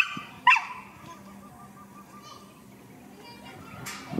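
Dog giving two short, high-pitched yelping barks about half a second apart, followed by faint quieter sounds.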